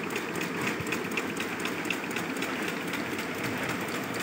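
Automatic agarbatti (incense-stick) making machines running: a steady mechanical drone with a regular light ticking.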